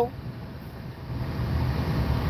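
Low, steady rumble of a car's engine and road noise heard inside the cabin, growing gradually louder toward the end.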